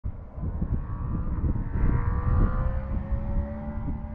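Wind buffeting an outdoor camera microphone in irregular low gusts. Under it is a faint, distant engine drone that rises slowly in pitch through the second half.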